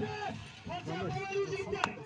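Men's voices talking and calling over one another in an outdoor crowd, with a sharp click near the end.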